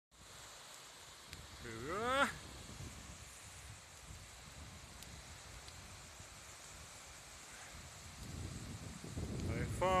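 Wind and small waves washing onto a sandy shore, with wind buffeting the microphone and building toward the end. A short rising voice-like call comes about two seconds in.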